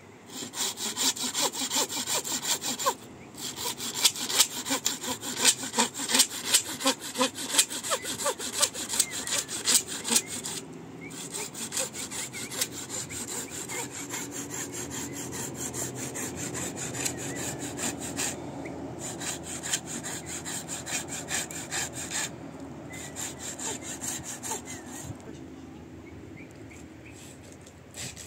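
Hand saw cutting through a log in quick, regular back-and-forth strokes, with a couple of short pauses. Partway through, the strokes turn softer and duller, and they fade near the end.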